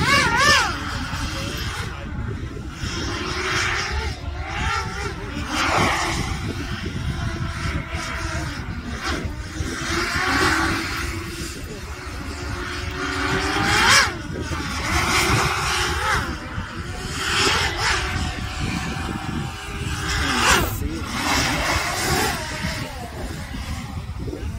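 Multirotor drone flying low and manoeuvring. Its motor and propeller whine keeps rising and falling in pitch, with several swooping passes, over steady wind rumble on the microphone.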